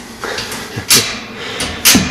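The door latch of a metal wire pet playpen being worked by hand: a few sharp metallic clicks, the loudest about a second in and just before the end.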